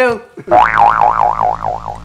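Cartoon 'boing' comedy sound effect: a springy tone warbling up and down about four times a second, starting about half a second in and cutting off suddenly after about a second and a half.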